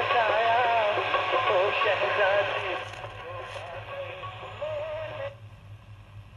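Music with a singing voice playing through the small built-in speaker of a National 1822 mono radio cassette recorder, thin with little bass; it stops abruptly about five seconds in, leaving a low hum.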